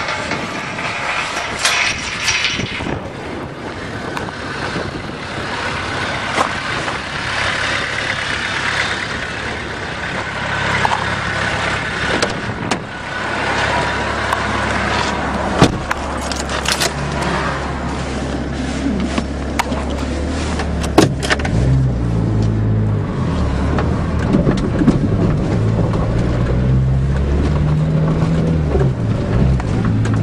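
Vehicle driving over rough, frozen farm ground, heard from inside the cab: a steady rumble of tyre and body noise with a few sharp knocks. From about halfway an engine note comes in and rises and falls as the speed changes.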